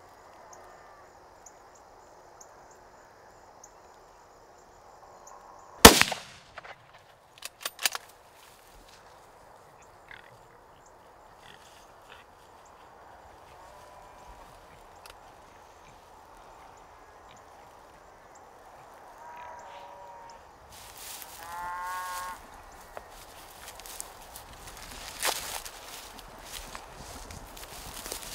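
A single 7mm-08 hunting rifle shot about six seconds in, the loudest sound, followed a couple of seconds later by two quieter sharp clicks. Later a short pitched animal call is heard, and a second, weaker sharp crack comes near the end.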